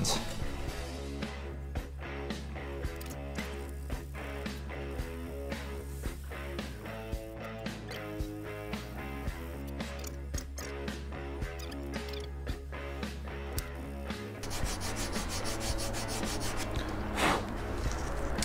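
Sandpaper rubbed by hand over the edge of a stained wooden guitar body, a steady run of rubbing strokes, smoothing a freshly cut belly bevel. Background music plays underneath. A few seconds before the end the strokes turn quicker and a little louder.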